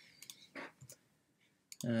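A few faint, short clicks of a computer keyboard and mouse as a word is typed into a web form. A man's voice starts speaking near the end.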